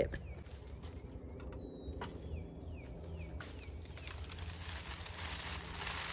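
Faint bird calls: a few short falling chirps and one thin held whistle, over a low steady background rumble.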